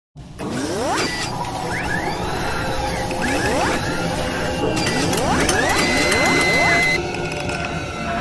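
Sound effects for a mechanical animation: a run of clicking and ratcheting metal sounds, with a rising whoosh every couple of seconds and a held high tone near the end.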